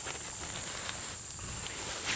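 A steady high-pitched insect drone, with faint rustling of the tent's fabric stuff sack being opened and unrolled.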